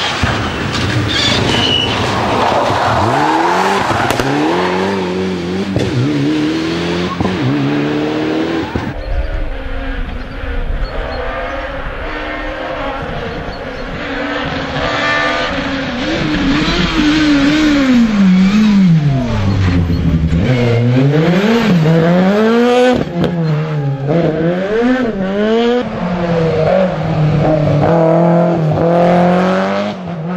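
Rally cars driven hard on a tarmac stage, one after another. Each engine revs up and drops sharply through gear changes and lifts, again and again.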